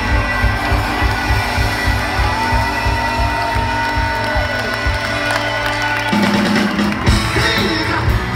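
Live soul band playing loudly: electric guitar, bass guitar and drums in a mostly instrumental passage.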